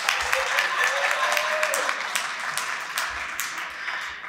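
A room full of people applauding, with many hands clapping at once; the clapping thins out in the last second.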